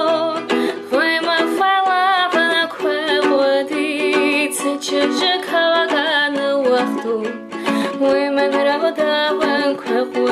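A woman singing an Ossetian-language song while strumming a ukulele, with vibrato on her held notes.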